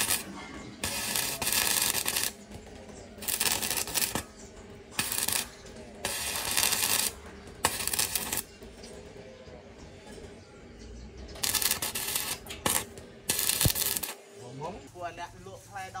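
Electric arc welding on steel, the arc crackling in a string of short bursts, each a fraction of a second to about a second long, with pauses between them, as in tack or stitch welding.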